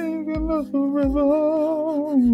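Background music: a song with a singer holding a long note with vibrato over a steady beat.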